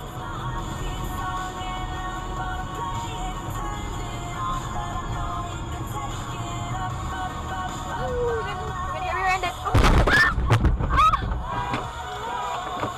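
Music over the low rumble of a car in traffic, then about ten seconds in a few loud bangs as the dashcam car is hit from behind in stopped highway traffic.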